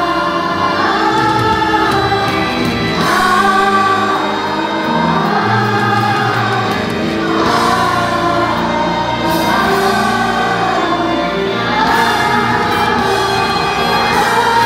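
A chorus of grade-school children singing a stage-musical number together over an instrumental accompaniment, in phrases that swell and fall every few seconds.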